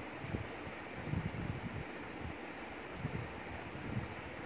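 Wind noise on the microphone: irregular low rumbles over a steady hiss, with no clear event.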